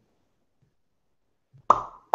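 Dead silence, then near the end a single short, sharp pop from a man's mouth with a brief ringing tone, as he murmurs "hmm".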